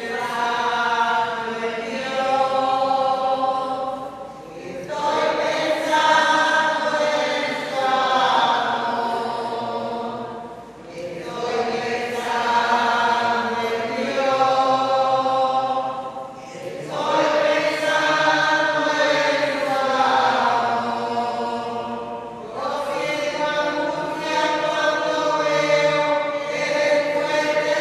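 Entrance hymn at Mass being sung, in phrases of about five to six seconds with short breaks between them.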